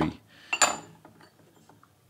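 Porcelain lid of a small lidded tea brewing cup clinking sharply against the cup once, about half a second in, followed by a few faint light clicks as it is handled.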